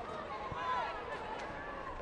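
Football stadium ambience: faint, distant shouted calls over a low crowd murmur.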